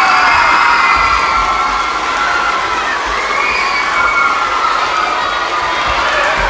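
A large crowd of elementary school children cheering and screaming, many high voices at once. It is loudest in the first couple of seconds, then eases a little.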